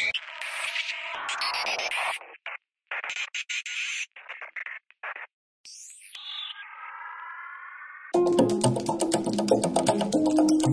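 Electronic background music with synthesized sound effects: a hazy wash, then a run of short choppy sounds with silent gaps between them, a rising sweep and a held tone, before a rhythmic track comes back in about eight seconds in.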